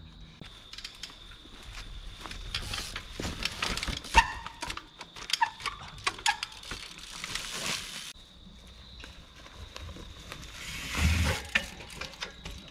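Trials bike hopping across boulders: sharp knocks of the tyres and bike landing on rock, the loudest about four seconds in, mixed with quick clicking of the freewheel hub and chain as the pedals are ratcheted.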